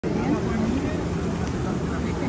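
Indistinct voices of nearby people over a steady low rumble.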